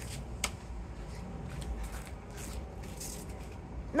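Faint rustling over a steady low rumble, with a single sharp click about half a second in.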